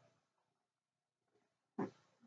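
Near silence, then one short stroke of a marker on a whiteboard near the end.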